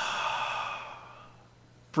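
A long, deliberate deep breath out close to the microphone, fading away over about a second and a half.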